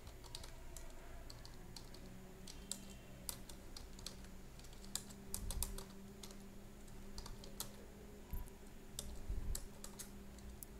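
Typing on a computer keyboard: irregular runs of short, fairly faint keystroke clicks over a low steady hum.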